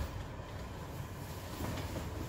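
A person and a gi-clad grappling dummy shift and settle onto a floor mat, with a dull bump and scuffing about one and a half seconds in, over a steady low rumble.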